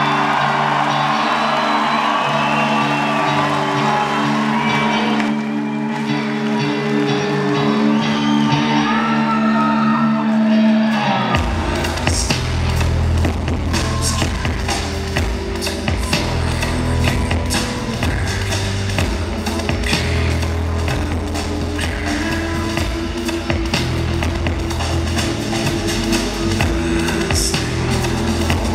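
Live rock band heard from the crowd in an arena: a sustained droning chord for about eleven seconds, then the drums and full band come in together and play on at full volume.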